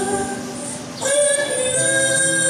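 A woman singing a gospel song over backing music. Her voice drops away briefly soon after the start, and a new held note comes in about a second in.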